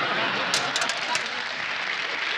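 Studio audience applause, with several sharp clicks in quick succession about half a second in.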